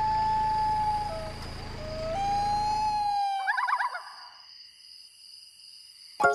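A held, siren-like electronic tone that slides in pitch, dipping and rising a couple of times over a low hum, then breaks into a short warbling flutter about three and a half seconds in before fading to faint high tones.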